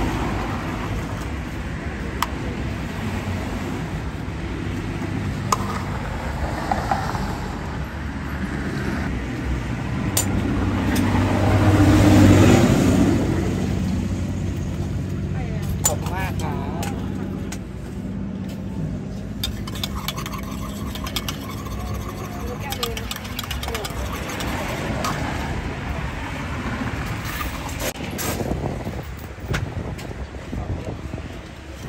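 Passing road traffic, with one vehicle growing louder and fading about twelve seconds in. Occasional sharp clinks of coffee-making utensils.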